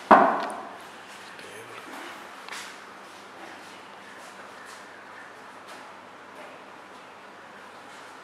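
A single sharp metallic clank with a brief ring just after the start, as the impact tester's heavy pendulum hammer is set in its raised starting position. After it, only faint room noise with a few light clicks.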